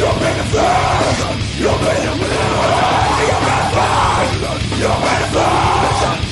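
A man screaming harsh metal vocals into a handheld microphone over a loud heavy metal song, the shouted phrases breaking off every second or so.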